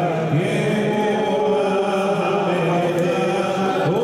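A huge crowd of worshippers chanting prayers together, a dense steady mass of voices holding long notes that slowly rise and fall in pitch.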